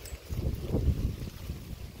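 Wind buffeting the microphone: a low, uneven rumble, strongest from about half a second to a second in.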